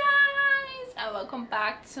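A woman calls out one long, high-pitched vowel as a greeting, sliding up at the start and held for about a second. She then goes straight into talking.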